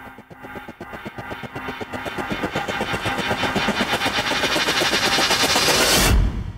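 Intro sound design: a swelling riser made of rapid, evenly spaced clicks over sustained tones, growing steadily louder.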